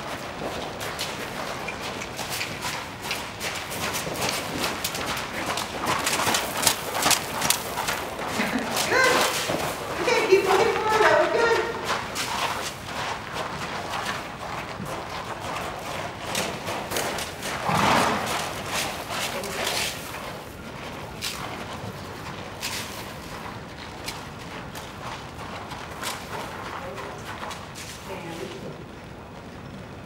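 Horse walking on soft sand arena footing, its hooves making irregular dull thuds and knocks, with indistinct voices at times.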